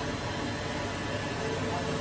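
Steady hum and hiss of injection moulding machinery in a factory hall, even throughout with no distinct clanks or impacts.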